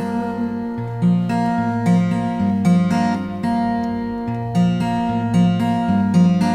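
Acoustic guitar played alone, strummed chords changing about every half second to a second.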